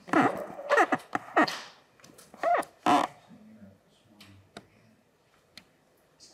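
Short bursts of laughter and voices in a meeting room, then a few faint clicks.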